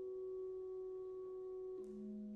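Clarinet holding a soft, pure-toned sustained note, then moving down to a lower held note near the end, with fainter piano tones ringing beneath.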